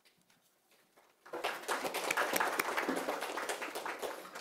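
Applause from a small group of people clapping, starting about a second in.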